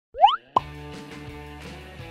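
Intro-card sound effects: a quick rising cartoon 'plop' glide, then a sharp hit about half a second in, followed by light upbeat intro music with held notes and a steady beat.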